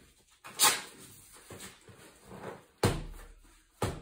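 Gloved strikes landing on a hanging heavy punching bag: several thuds at uneven intervals, the hardest about half a second in and near the end.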